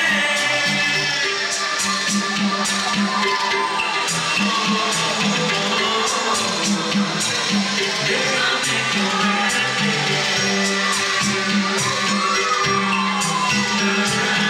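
Live synth-pop played loud through a club sound system: a steady dance beat with keyboards, a male voice singing, and the crowd audible beneath.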